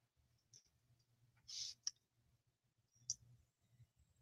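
Near silence broken by a few faint clicks and one soft, brief rustle about a second and a half in, from hands rummaging through lace and fabric scraps.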